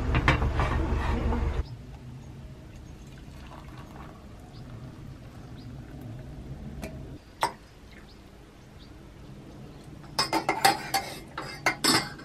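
Hot water poured from an enamel kettle into an enamel mug, a single clink midway, then a teaspoon clinking rapidly against the mug as tea is stirred near the end. It opens with a louder noise that cuts off abruptly after about a second and a half.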